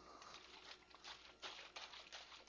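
Faint, irregular swishing of hot used cooking oil and methoxide being shaken hard inside a plastic soda bottle.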